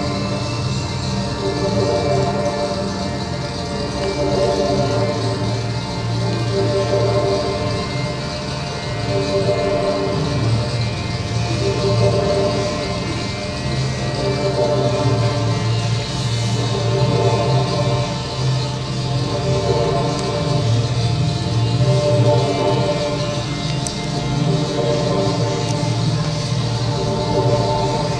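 Ambient music of sustained, layered droning tones that swell and fade slowly.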